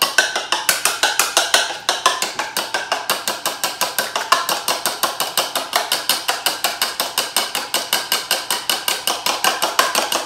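Two raw eggs being whisked with a fork in a china bowl, the metal tines clicking against the bowl in a fast, even rhythm of about six or seven strokes a second.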